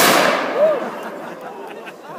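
A single black powder musket shot, loaded with an extra-heavy powder charge: one sharp, loud crack, its echo dying away over about a second and a half.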